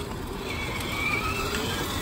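Battery-powered Mercedes SLS ride-on toy car driving over concrete: a low steady rumble from its wheels, with a faint thin whine from the electric drive motor starting about half a second in and fading after a second.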